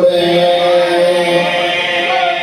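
A man's voice chanting in melodic recitation, holding one long, nearly level note, amplified through a microphone.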